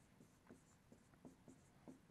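Faint, irregular strokes of a pen writing on an interactive whiteboard screen.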